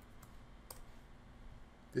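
A few faint clicks of a computer keyboard and mouse as a search is typed and entered, with one sharper click about two thirds of a second in.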